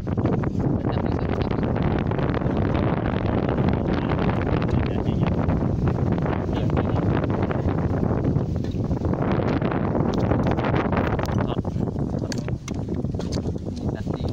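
Wind buffeting the microphone: a loud, steady rumbling noise without any pitch, with a few light clicks scattered through it.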